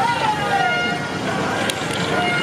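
Street crowd noise: voices calling out over several horns, which sound held, steady tones at different pitches.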